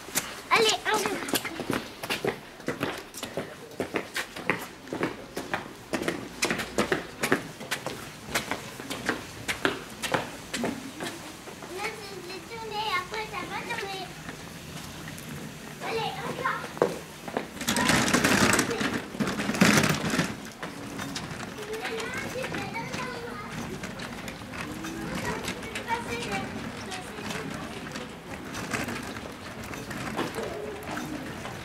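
Indistinct voices of children playing and people talking, with many short clicks and knocks in the first dozen seconds and a louder noisy burst about eighteen seconds in.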